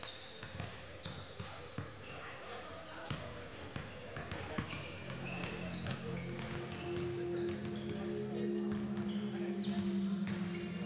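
Basketballs bouncing on a hardwood gym floor, with short sneaker squeaks from players warming up. About six or seven seconds in, music starts and carries on under the bouncing.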